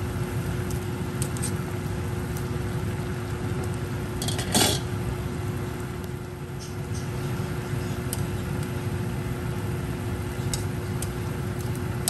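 A pot of instant noodle soup simmering on the stove under a steady low hum, with a few light metal clinks of tongs against the steel pot. A brief louder clatter comes about four and a half seconds in.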